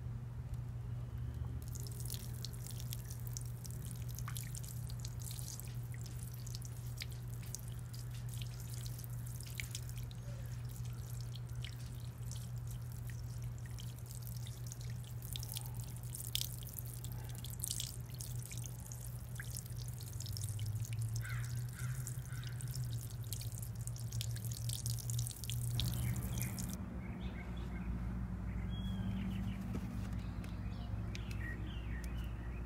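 Water being poured off the top of a tub of settled clay slurry, splashing and dripping onto the dirt in many quick small drops, over a steady low hum. The dripping stops near the end.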